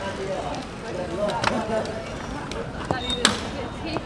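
Indistinct chatter of people's voices in the background, with a few sharp clicks about a second and a half in and again near the end, and a brief high tone around the three-second mark.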